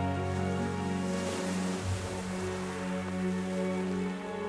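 Soft background music of long held tones, with the wash of surf breaking over rocks rising faintly beneath it about a second in.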